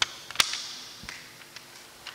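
Paper ballot being handled: a sharp click about half a second in, then a brief rustle of paper that fades, with a few faint ticks.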